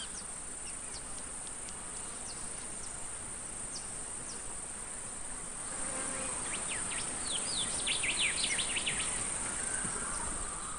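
Faint outdoor ambience: a steady hiss with short, high chirps from small animals scattered through it, coming thicker and faster in the second half.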